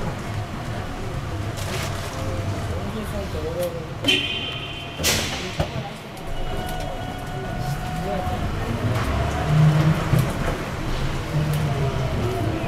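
Cabin of an electric trolleybus running through a road tunnel: a steady low rumble from the bus on the move, with people's voices murmuring, and a brief loud hiss about five seconds in.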